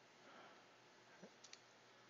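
Near silence: room tone, with a few faint, short clicks about a second and a quarter to a second and a half in.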